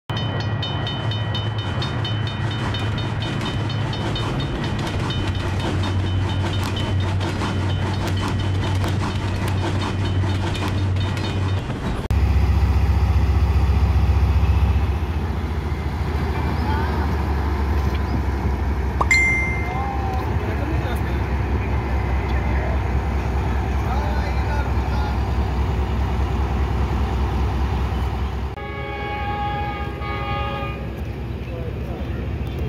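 For about the first twelve seconds, a rhythmic bell-like signal sound over the animated level crossing. Then comes the diesel engine of a Pakistan Railways ZCU-30 locomotive, running at a station with a steady low rumble. Near the end this gives way to a pitched, horn-like tone.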